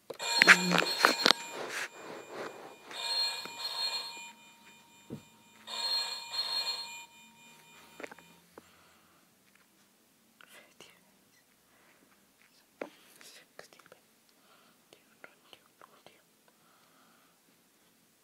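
Tinny electronic sounds with steady beeping tones from the small speaker of an electronic Deal or No Deal game, in three bursts over the first eight seconds, followed by a few faint clicks.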